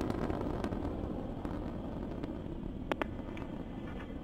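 Soyuz-2.1b rocket's engines heard from the ground as a steady low rumble that slowly fades as the rocket climbs, with a few faint crackles.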